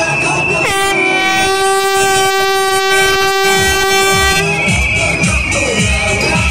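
A horn sounding one long blast of nearly four seconds on a single steady pitch, starting about a second in, over carnival music and crowd noise.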